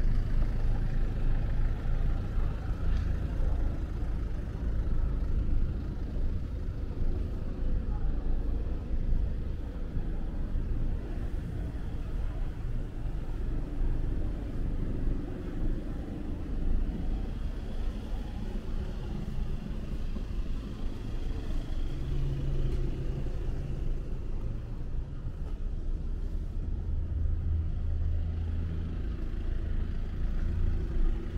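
City street traffic: a steady low rumble of passing cars, with one vehicle's engine hum standing out briefly about two-thirds of the way in and again near the end.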